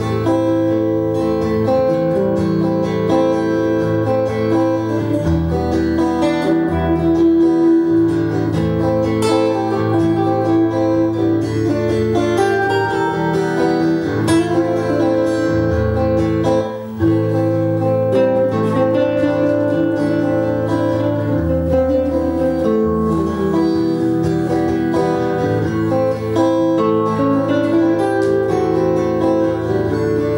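Acoustic-electric guitar improvising a lead over a looped guitar rhythm part in A minor, played back through an amp. The loudness dips briefly just past halfway.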